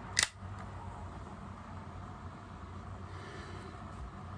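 Carbonated energy-drink can being opened: a short crack and fizz from the pull tab about a quarter second in. A steady low hum follows.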